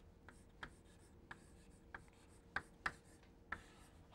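Chalk writing on a blackboard: faint, uneven taps and short scrapes as each stroke of a word is drawn, the loudest a little past the middle.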